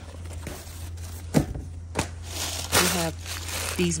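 Packing paper rustling and crinkling as gloved hands dig through a cardboard box, with two sharp knocks, about a second and a half and two seconds in.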